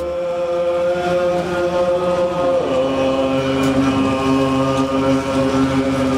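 Tibetan Buddhist monks chanting together in long held notes, the lower voice stepping down in pitch about two and a half seconds in.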